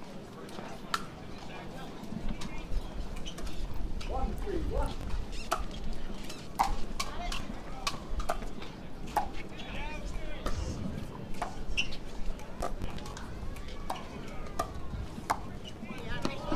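Pickleball rally: paddles striking a hard plastic pickleball in an irregular run of sharp, hollow pops, with a low rumble of wind underneath.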